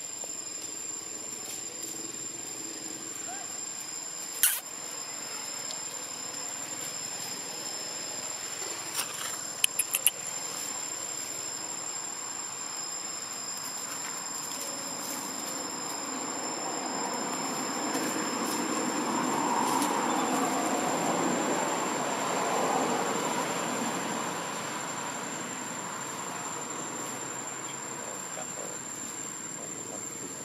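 Outdoor ambience of insects droning steadily at a high pitch, with a sharp click a few seconds in and a quick run of clicks about ten seconds in. A broad swell of louder background noise builds in the middle, loudest around twenty seconds in, then fades.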